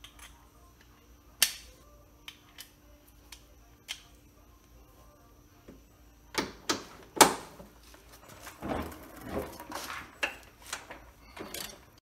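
Hand ratchet on a long extension working the front lower frame member bolts: a few isolated clicks, then several loud metallic clicks and knocks about six to seven seconds in, followed by quick runs of ratchet clicking as the bolts are turned loose.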